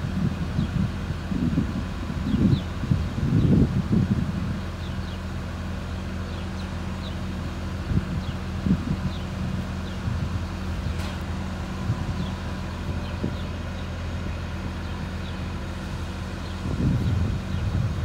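Trackmobile railcar mover's diesel engine running steadily as it moves a string of covered hopper cars. Wind buffets the microphone in the first few seconds and again near the end.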